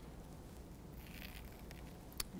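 Faint rustling of muslin and tape being handled and pinned on a dress form, mostly in the second half.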